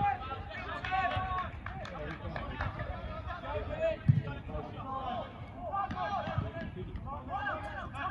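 Indistinct shouts and calls from football players on the pitch, short voices one after another, with a dull low thump about four seconds in.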